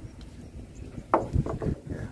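A few soft knocks and clicks on wooden floorboards, about a second in, over low handling rumble.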